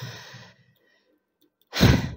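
A tired woman's sigh fading out, then, near the end, a loud, short breath drawn in close to the microphone.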